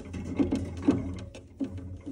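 Drinks in a glass-door minibar fridge clicking and rattling against each other and the shelves as they are handled, rapid and irregular, over a low steady hum.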